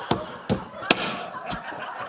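Wooden rolling pins bashing a block of butter wrapped in wax paper on a countertop: four uneven blows, softening the butter to the right consistency for puff pastry.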